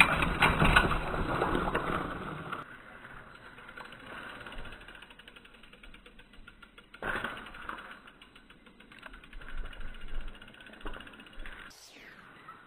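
Mountain bike rolling over a rocky forest trail: tyre and ground noise, loudest for the first two and a half seconds, then fainter, with another short burst about seven seconds in.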